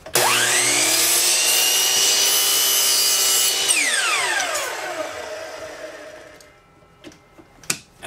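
Hitachi miter saw motor whining up to speed, running steadily for about three seconds while its blade cuts through a small wood block, then winding down in falling pitch after switch-off and fading out. A small click near the end.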